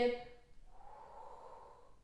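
The drawn-out end of a woman's spoken word, then a soft, steady breath lasting about a second and a half.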